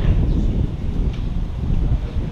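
Wind buffeting the camera microphone: a steady low rumble with a hiss above it.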